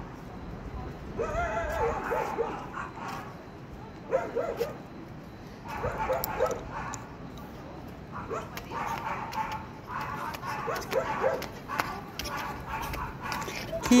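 A dog yelping and barking in short bouts, one every couple of seconds.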